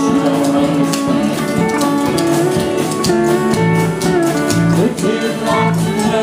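A small live band playing: strummed guitars and electric bass with drums, and singing.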